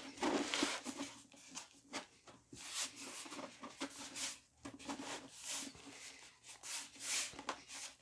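A rolled-up sheet of watercolour paper with a tissue-paper collage, rolled back and forth under the palms on a plastic sheet: a series of soft papery rubs and rustles as the warped sheet is curled the opposite way to uncurl it.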